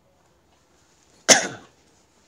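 A man's single sharp cough about a second in, dying away within half a second.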